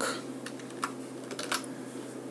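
A few separate keystrokes on a computer keyboard, sharp clicks spaced out over the two seconds.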